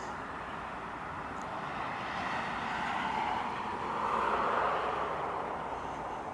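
A vehicle driving past, its road noise swelling to a peak about four to five seconds in and then easing off.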